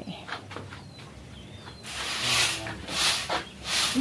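A broom sweeping an earthen floor: a series of short swishing strokes, about two a second, starting about two seconds in.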